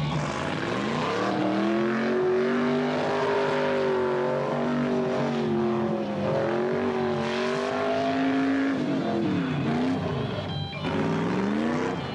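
Car engine revving hard during a burnout: it climbs about a second in and is held at high revs with a wavering pitch while the tyres spin and smoke. It drops off around nine seconds in, then is revved up again near the end.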